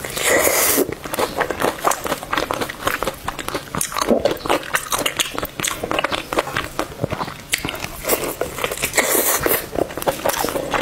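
Close-miked biting and chewing of a sauce-coated fried chicken drumstick: a loud bite just after the start, then steady chewing full of small clicks, and another loud bite about nine seconds in.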